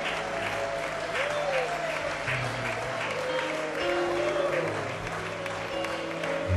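Live worship music with held chords, a bass line and voices, while the congregation claps and cheers along.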